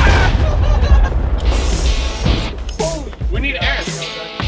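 Fireball from fuel lit around an off-road tire to pop its bead back onto the steel wheel: a loud rushing burn that fades over a few seconds. Shouting and laughter come in near the end.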